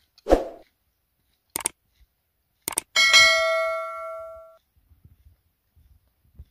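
Subscribe-button sound effect: a click, then two quick clicks, then a notification bell that dings about three seconds in and rings out over about a second and a half. A dog gives a single short bark near the start.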